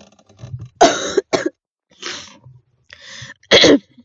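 A person coughing, a series of short harsh coughs with the loudest about a second in and again near the end.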